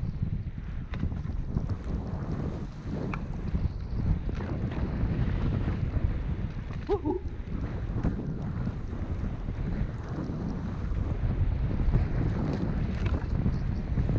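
Wind noise buffeting the microphone of a skier's camera during a downhill run through deep powder, with the hiss of skis through the snow and scattered light clicks from skis and poles.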